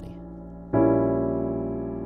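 Piano playing an A-sharp diminished chord: A-sharp octaves in the bass, G, C-sharp and E above. The chord is struck once about three-quarters of a second in and left to ring, slowly fading.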